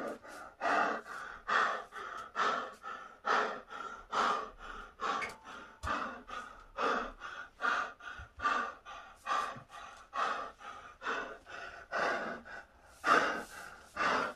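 A man breathing hard and fast from exertion in the middle of a workout circuit, about two heavy breaths a second, with one louder gasp near the end.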